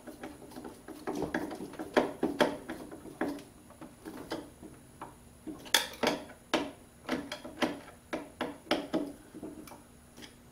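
Wires and a steel electrical junction box being handled: irregular small metal clicks, knocks and scuffs as the wires are worked into the box, a few sharper clacks among them.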